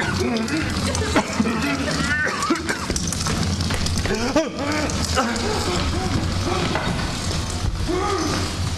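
Wordless human cries and groans, the pitch rising and falling, over a steady low rumble.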